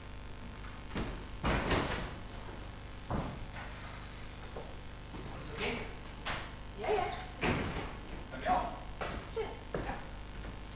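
A string of irregular knocks and thumps on a theatre stage, about a dozen, from an actor crossing the stage and handling a prop, with short vocal sounds among them.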